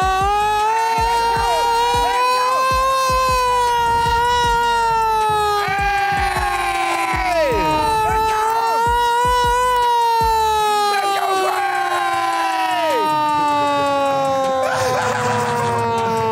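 Hand-cranked mechanical siren wailing as it is cranked: its pitch climbs, holds, then slides down about halfway through, climbs again and winds slowly down near the end. A crowd cheers and yells over it.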